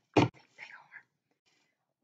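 A brief thump about a fifth of a second in, then soft, whispered, breathy murmuring for under a second.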